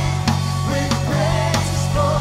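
Live worship band playing a praise song: several singers over a band with a steady bass line and a drum beat about every 0.6 seconds.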